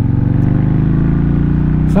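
Kawasaki Mean Streak 1600's V-twin engine running steadily while the motorcycle rides along a dirt road, over wind and road noise.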